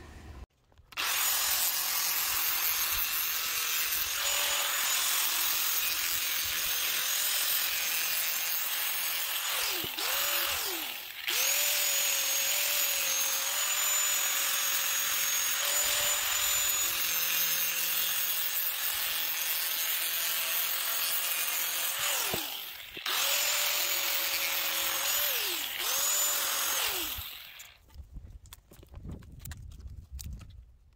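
Electric angle grinder with a cut-off disc cutting through the edge of a cured epoxy-and-cloth composite dash, a steady high whine over gritty cutting noise. It is let off and spun back up a few times, the pitch dropping and climbing again, and stops a few seconds before the end.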